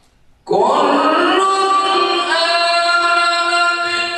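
A male qari's voice beginning a long, melodic phrase of Quran recitation about half a second in, each syllable drawn out and held on steady high notes that step upward.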